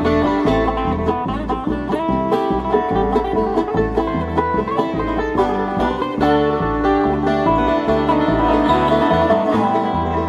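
Live bluegrass band playing an instrumental break: banjo picking over guitar, with a bass stepping between low notes on a steady beat.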